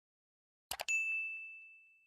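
Two quick clicks, then a single bright bell ding that rings out and fades away over about a second and a half: the notification-bell sound effect of an animated subscribe button.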